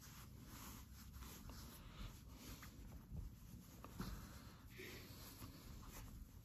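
Near silence with faint, scattered rustling of a terry-cloth towel and a cotton fabric tab being handled and pushed through one another.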